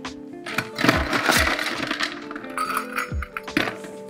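Ice cubes clattering into a coupe glass to chill it: a burst of rattling clatter, then a few lighter clinks, over background music.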